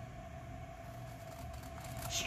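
Quiet room tone: a faint steady hum with low background noise and no distinct cutting snips.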